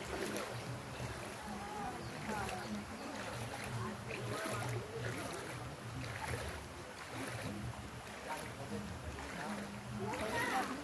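A steady low hum with an uneven pulse, with faint distant voices over it.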